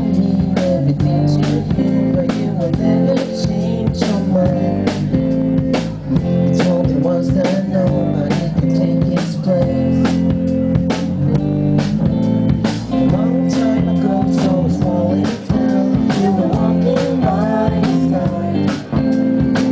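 Live indie pop band playing: electric guitars over a drum kit keeping a steady beat, about two hits a second.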